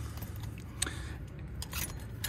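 A few light metallic clicks and rattles from an X-Chock scissor wheel chock and its ratchet wrench being handled between tandem trailer tires.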